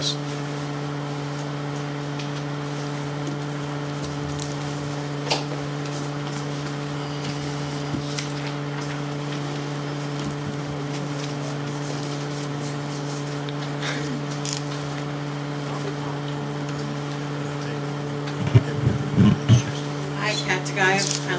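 Steady low electrical hum of the room and recording, with a few faint knocks, and low voices starting near the end.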